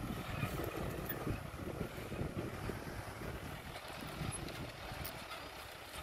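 Tractor engine running while ploughing, mixed with wind noise on the microphone; the sound eases a little toward the end.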